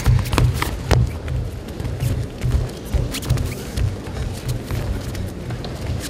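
Karate fighters' bare feet stepping and bouncing on the competition mats, a run of soft low thuds, with a few sharp slaps in the first second as a kick is thrown.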